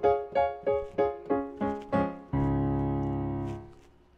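Keyboard with a piano sound improvising in D flat: a quick series of struck chords and notes, then a low full chord held for over a second that fades away near the end.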